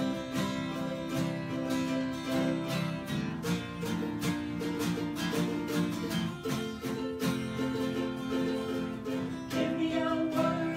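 Acoustic guitar strummed in a steady rhythm, playing a song's instrumental intro.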